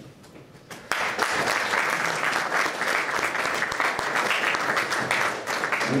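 Audience applauding, starting about a second in and going on steadily.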